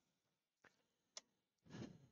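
Near silence broken by a faint tick and then one sharp click a little past halfway, as a Robert Sorby Patriot four-jaw chuck is screwed onto the lathe spindle. A short faint sound follows near the end.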